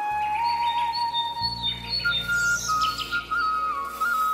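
Background music: a simple single-line melody over steady low tones, with bird chirps mixed in.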